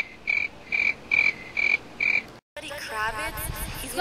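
Telephone disconnect tone: short, high, evenly spaced beeps about twice a second, the sign that the other party has hung up. The beeps stop abruptly about two and a half seconds in.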